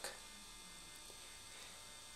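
Quiet room tone with a faint, steady electrical hum.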